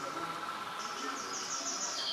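Insect chirping in the manner of a cricket: a run of short high pulses, about six a second, starting about halfway in, over a steady high tone.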